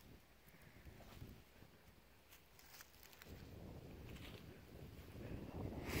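Faint footsteps through grass with light wind on the microphone, getting a little louder about halfway through.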